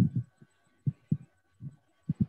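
A few short, low, muffled thumps, about three in two seconds, picked up over a video-call line, with a faint steady high tone underneath.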